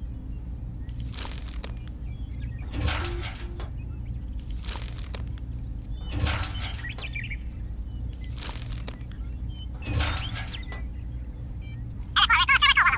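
Small woven bamboo baskets of dried soybeans being picked up and set down, six short rustling rattles of the beans and basket weave spaced roughly every one and a half to two seconds, over a steady low hum.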